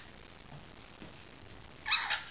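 Mostly quiet room with faint soft movement sounds, then near the end a sudden high-pitched vocal cry with several overtones.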